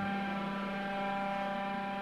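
Electronic dance music at a beatless moment: a steady synthesizer drone of several held tones, with no drums.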